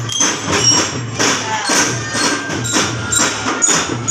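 Children's drum band playing: drums keep a steady beat, with short high bell-like notes from bell-lyres (glockenspiels) over it.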